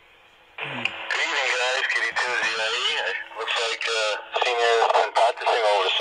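An amateur radio operator's voice heard over an FM repeater through a handheld transceiver's speaker. It starts about half a second in and talks steadily, with narrow, band-limited radio audio.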